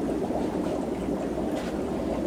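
Steady rushing and splashing of water from aquarium filter outlets pouring into tanks.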